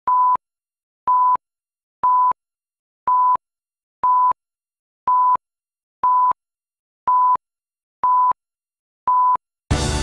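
Countdown-leader beeps: ten short, identical, steady mid-pitched beeps, one each second, ticking off the numbers. Music starts just before the end.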